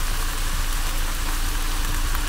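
Lamb and halloumi sizzling in a frying pan on a gas hob: a loud, steady hiss over a low rumble that starts and stops abruptly.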